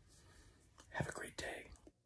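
A man's voice whispering a few words about a second in, after a faint pause; the whisper finishes the sign-off that began "until then...".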